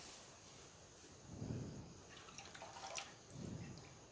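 Faint trickle and drips of the last milk running off a steel bowl into an aluminium kadhai, with a light click about three seconds in.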